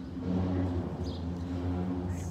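A steady, low mechanical hum, like an engine or motor running, growing a little louder a quarter second in.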